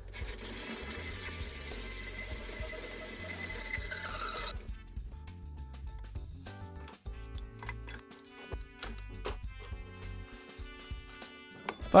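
Background music throughout. For the first four and a half seconds or so it sits over the steady running of a milling machine, whose spindle is turning a boring bar that opens out a hole in an aluminium block. The machine sound stops abruptly, leaving only the music.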